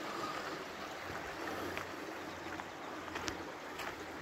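Snowmelt stream running steadily through a concrete roadside channel, an even wash of water, with a few light clicks near the end.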